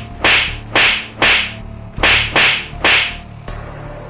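Six sharp lashing strikes, added as sound effects of a beating, come in two runs of three about half a second apart over a low steady drone.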